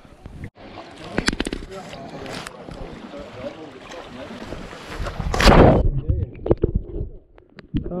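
Wind buffeting a helmet or chest camera's microphone, with a few knocks early on, then a loud splash about five seconds in as the camera enters the sea, followed by muffled underwater bubbling and clicks.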